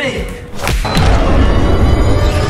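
One heavy thud about two-thirds of a second in, over dramatic film-score music that swells louder and deeper straight after it.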